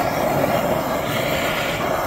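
Steady rushing roar of a handheld gas torch heating the steel idler arm so a new bearing can be pressed in.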